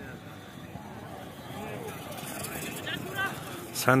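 Faint, distant men's voices over a low steady background, with a loud man's voice breaking in right at the end.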